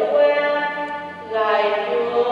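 Hymn singing: voices holding long, slow notes that step from one pitch to the next, with a short dip between phrases a little past a second in.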